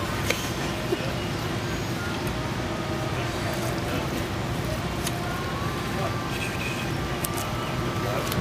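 Indistinct background voices over a steady low rumble, with a few faint clicks.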